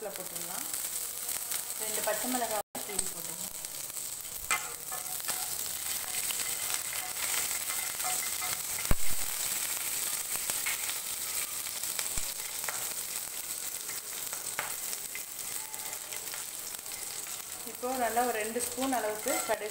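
Hot oil sizzling steadily in a frying pan as a tempering of seeds, curry leaves, green chillies and sliced onion fries. A single sharp knock sounds about nine seconds in.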